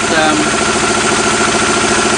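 Engine with a helical variable camshaft idling steadily at about 900 rpm on a test bench, an even running beat with a steady high tone over it.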